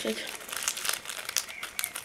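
Small clear plastic packet crinkling and crackling in irregular bursts as fingers work a set of fingerboard wheels out of it.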